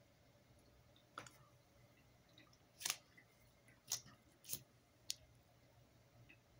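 Near silence broken by five short, sharp clicks spread over about four seconds.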